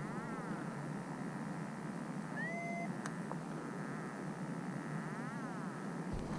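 Steady rush of airflow on the microphone of a paraglider in flight low over the ground. A short whistle-like tone, rising and then held, sounds about halfway through.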